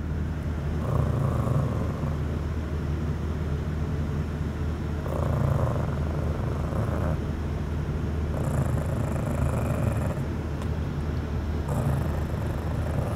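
Shih tzu puppy growling low while guarding the mango seed in its mouth: three rumbling growls, each a second or two long, over a steady low drone.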